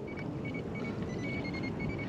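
Steady low wind and water noise on open water around a kayak, with faint short high-pitched tones scattered through it.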